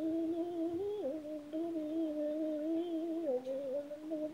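Unaccompanied female lead vocal (the song's isolated vocal track) singing long held notes. The pitch steps down just after a second in and again a little past three seconds.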